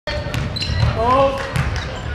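Basketball dribbled on a hardwood gym floor, several bounces in a row, with crowd and player voices calling out around it.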